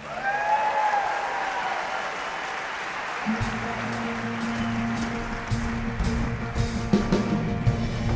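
The rock band cuts off and a long yell rises and falls over audience cheering and applause. About three seconds in the band comes back in on a steady low bass note, with scattered drum hits.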